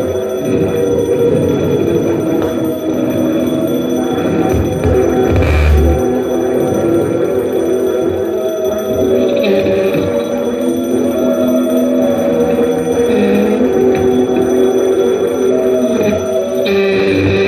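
Live experimental electronic drone music: many overlapping held tones, dense and unbroken, shifting slowly. A single low thump lands about five and a half seconds in.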